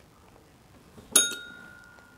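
A tabletop quiz bell pressed once, about a second in. It gives a single bright ding whose tone rings on and fades over more than a second.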